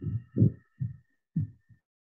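A run of short, low thuds, about five in two seconds, over a faint steady high whine.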